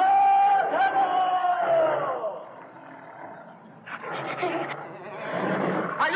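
A man's long, high-pitched yell of fright, held for about two seconds and falling away at the end. A rougher, noisier sound follows from about four seconds in.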